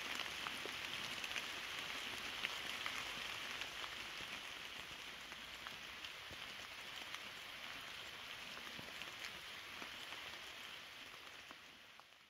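Steady rain falling in the woods, with many small drops ticking among the leaves. It fades out near the end.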